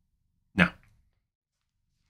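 A single brief voice-like sound, a little over half a second in, with near silence around it.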